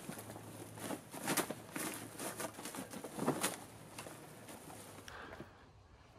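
Bags of salt being handled and set down on a loaded hammock: irregular rustling and scraping with a few louder soft knocks in the middle.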